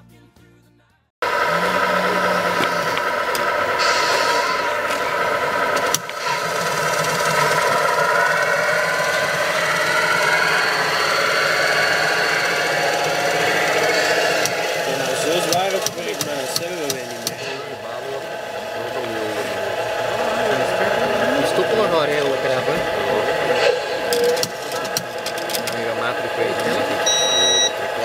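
Radio-controlled model machines running with their simulated engine sound, starting suddenly about a second in, the pitch sweeping up and down in the middle as they work, with people talking in the second half.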